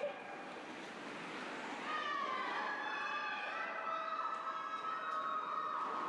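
Spectators' voices raised in long, drawn-out, high-pitched shouts, several overlapping, starting about two seconds in and held to the end.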